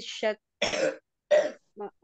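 Two coughs, about three quarters of a second apart, breaking into a reading in Arabic, with a brief fragment of speech at the start and just before the end.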